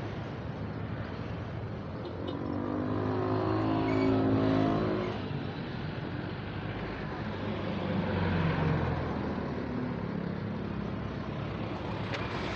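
Road traffic passing close by: a motor vehicle goes past, loudest about four seconds in, and a second, quieter one near eight or nine seconds, over a steady hum of traffic.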